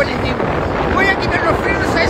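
A man's voice, hard to make out, under loud wind noise buffeting the microphone.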